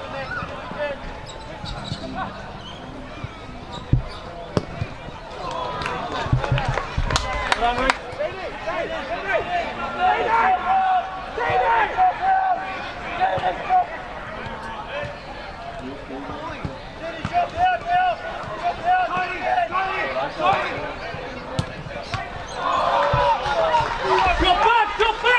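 Footballers' distant shouts on an outdoor pitch, with a few dull thuds of the ball being kicked: one about four seconds in and a cluster around seven seconds.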